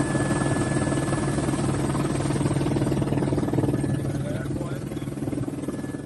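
Helicopter engine and rotor drone heard from inside the cabin, steady and loud, with a thin steady whine above it. It eases off slightly near the end.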